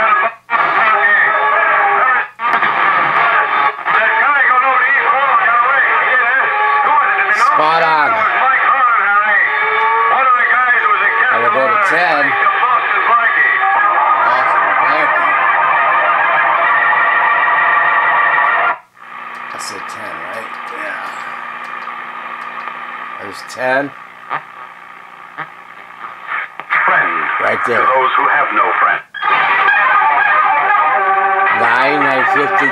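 Broadcast voices and music playing from the loudspeaker of a restored 1938 Silvertone model 6125 radio, dull with no treble, as the set is tuned across the AM broadcast dial. The sound drops out briefly a few times, and from about 19 to 26 seconds it is weaker, with a steady low hum under it, before a strong station comes back.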